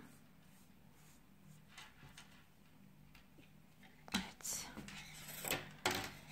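Quiet hand-handling of yarn and a knitted piece on a wooden table: faint rustles, then a sharp knock about four seconds in, followed by a few lighter knocks and rustles.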